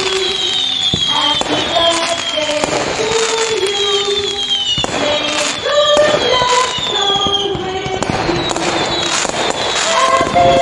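Fireworks sound effects, with repeated falling whistles and several sharp bangs, mixed over a birthday song with a melody line.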